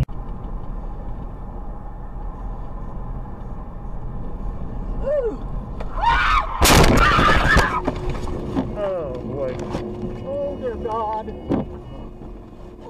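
Car crash heard from inside the car: steady road noise, then about six seconds in a loud crash of impact and scraping lasting over a second, followed by a steady tone and shaken voices.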